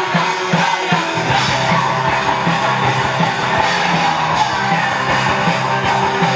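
Live rock band playing loud: electric guitars and drums, with the low end of bass and drums filling in fuller about a second in.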